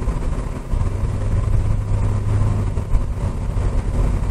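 Cabin noise of a 2012 Corvette Grand Sport convertible cruising: steady tyre and road noise under the low hum of its LS3 V8, with a steady low drone standing out for about two seconds in the middle. Nice and quiet for the car, with no rattles.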